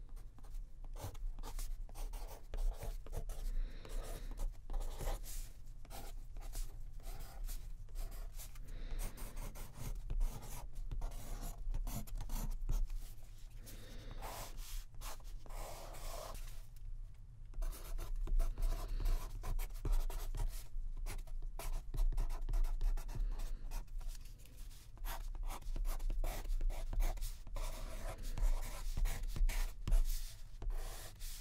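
Pen writing by hand on art-journal paper: quick scratching strokes in short runs, with a couple of brief pauses midway, over a steady low hum.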